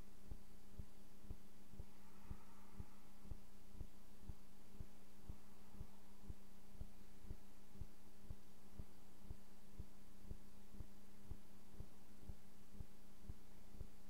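A steady low hum with soft low pulses repeating evenly about twice a second.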